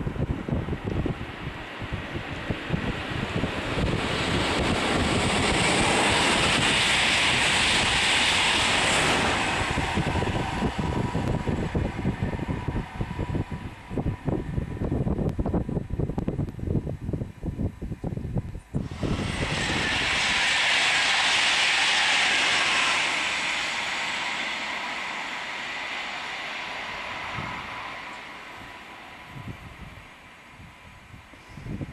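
High-speed test trainset passing at speed on a new high-speed line: a rush of noise that builds, peaks and fades, with wind buffeting the microphone. It breaks off abruptly partway through, and a second, similar swell of passing-train noise follows and fades away.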